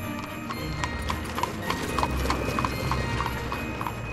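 Clip-clop of horse hooves, about three beats a second, woven into a Christmas music track over soft instrumental music.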